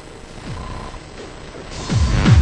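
Quiet breakdown of an electronic breakcore track: sparse, glitchy, mechanical-sounding clicks and textures, with a short beep recurring about once a second and a single falling kick drum about half a second in. The track swells back in near the end.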